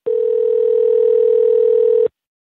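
Telephone ringback tone heard down a phone line: one steady ring lasting about two seconds, then cut off sharply. It signals an outgoing call ringing at the other end.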